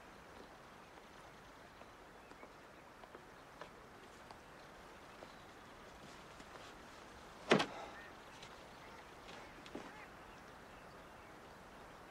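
Quiet riverbank ambience with a few light, scattered crunches of footsteps on stones, then one sharp knock about seven and a half seconds in and a softer one a couple of seconds later, as something meets the wooden canoe.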